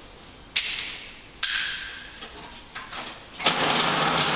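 A length of wallpaper rustling as it is handled: two short rustles about half a second and a second and a half in, then a louder, continuing rustle near the end.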